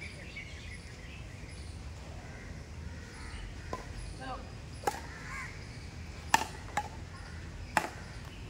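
Badminton rackets hitting a shuttlecock in a rally: about five sharp strikes in the second half, roughly a second apart, with the loudest about six seconds in. Birds call and people talk faintly behind.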